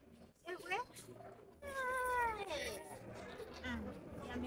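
A few high, wavering wailing calls: a short one about half a second in, a long one that falls steadily in pitch from about a second and a half in, and a brief one near the end.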